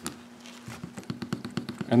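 Wooden boning tool rubbed in quick short strokes over damp holster leather, a rapid run of soft clicks and scrapes starting about half a second in, over a faint steady hum.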